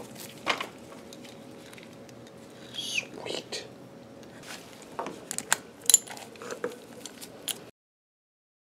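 Light metallic clinks and taps of a wrench and cast-iron gearbox parts being handled, most of them bunched about five to six seconds in, with a short falling squeak about three seconds in. The sound cuts off abruptly just before the end.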